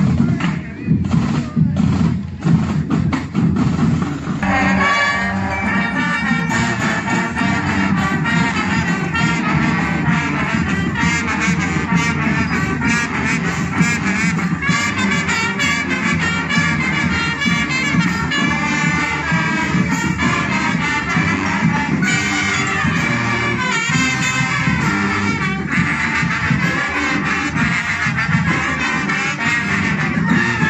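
Marching band playing live: drums alone for the first few seconds, then the brass comes in about four seconds in and plays a tune over the drumming.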